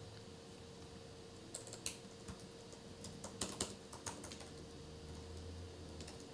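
Computer keyboard being typed on: faint, irregular key clicks in short runs, over a faint steady hum.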